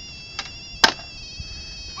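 A steady high-pitched whine, with one sharp knock a little under a second in.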